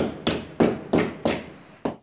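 Hammer blows striking a wall, about six sharp knocks at roughly three a second, each dying away quickly.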